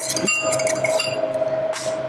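Small glass spice jar of paprika clinking against a spoon or the rim of the mixing bowl as the spice is shaken in, with short ringing clinks in the first second and a brief rustle near the end, over a steady hum.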